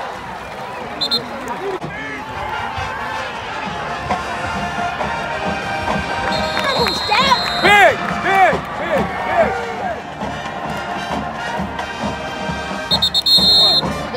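Football crowd cheering and shouting over background music, loudest about seven to nine seconds in, as the team scores. A referee's whistle blows for about a second around seven seconds in and again near the end.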